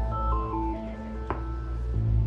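Live electronic music from synthesizers: sustained organ-like tones with a short melody of notes stepping up and down over a low drone. The drone drops back soon after the start and returns at the end, and a single click sounds a little past the middle.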